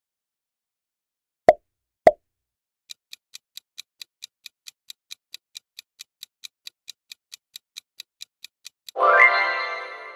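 Quiz-game sound effects: two quick pops as the next question comes up, then a countdown timer ticking about four to five times a second for six seconds, ending in a loud ringing tone as time runs out.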